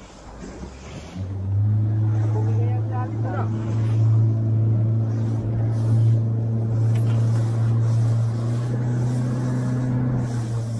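Small boat's motor under way, rising about a second in to a steady, even drone that holds at one pitch.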